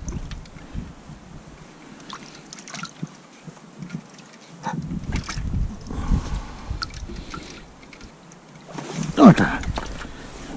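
Faint rustles and small clicks of hands pulling a fishing line up through an ice hole, with a patch of low rumbling noise about five seconds in and a short vocal sound falling in pitch near the end.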